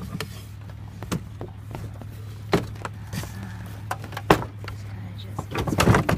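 Scattered knocks and clunks as a Frigidaire window air conditioner is shifted and slid into a camper wall opening onto brackets and wooden supports, over a steady low hum.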